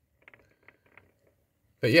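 Near silence broken by a few faint, irregular ticks from a motorised mirrored display turntable as it turns; a man starts speaking near the end.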